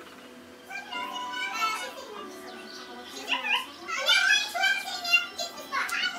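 A young child's voice vocalizing in short high-pitched phrases with no clear words, loudest from about three seconds in, with music playing faintly in the background.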